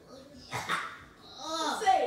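Wordless vocal sounds: a short breathy burst about half a second in, then a drawn-out pitched call that rises and falls near the end.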